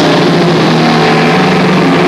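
Doom metal band's heavily distorted electric guitars and bass holding a loud, sustained chord that rings out steadily, with no drums or cymbals struck.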